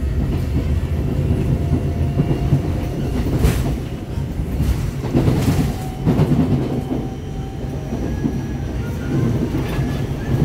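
Seoul Metropolitan Subway Line 4 train heard from inside the car while running: a steady low rumble with wheels clacking over the rails, and two louder sharp rattles about three and a half and five and a half seconds in.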